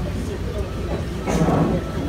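Room noise of a busy hall: a steady low rumble with faint voices, one brief voice rising out of it about halfway through.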